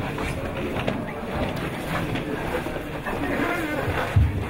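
Room noise in a hall: a steady low rumble with faint murmuring voices.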